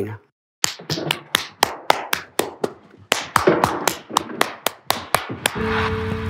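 A single person clapping slowly and steadily, about four claps a second, starting about half a second in. Just before the end a guitar starts playing.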